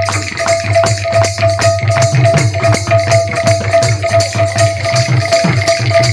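Kirtan band playing instrumental music without singing: a hand drum with sliding bass strokes under fast, even jingling percussion, and a steady repeated held note above.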